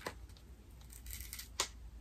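Fingers picking at and peeling a paper label off a small cardboard box: a sharp click right at the start, a soft scratchy rasp about a second in, and another sharp click about a second and a half in.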